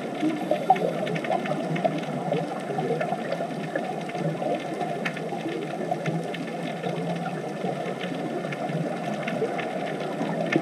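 Underwater ambience: a steady, dull rush of water noise, with faint scattered clicks and crackles throughout.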